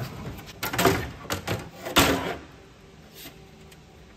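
Race car's engine cover being lifted off by hand: a few knocks and scraping rubs, then one loud knock about two seconds in.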